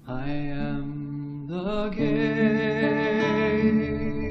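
Christian scripture worship song: singing comes in suddenly and holds long notes, the tune moving to new notes a couple of times.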